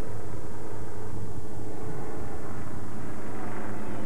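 A steady, even low hum made of several pitched lines, with a noisy haze above it.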